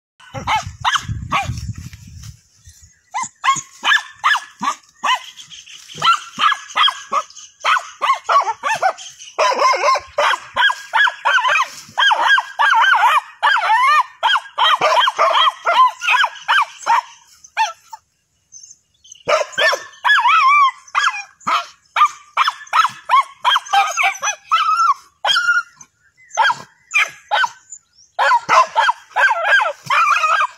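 Several dogs barking and yipping in rapid, high-pitched, excited bursts as they dig into a burrow after a snake. There is a pause of about a second past the middle.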